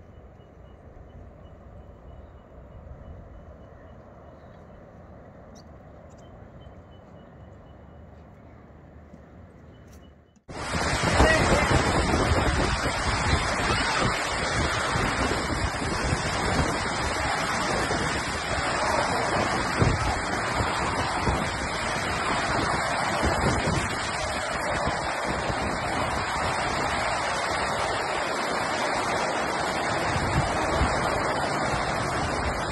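Quiet outdoor ambience, then a sudden cut about ten seconds in to loud storm wind gusting on the microphone over choppy lake water.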